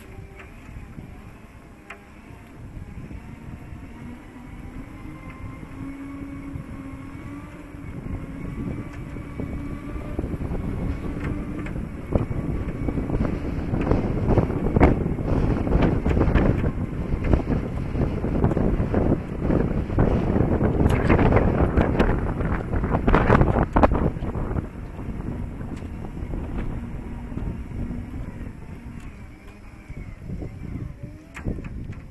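Segway's electric drive motors whining, the tone rising slowly as it picks up speed, under wind buffeting the microphone. The wind noise swells to its loudest through the middle of the ride and eases off near the end.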